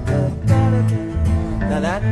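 Acoustic guitar playing through the song's chord changes in a loose rehearsal run-through.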